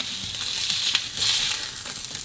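Burger patties and buns sizzling in hot fat in a frying pan, with a few short clicks and scrapes as a fork lifts a patty from the pan.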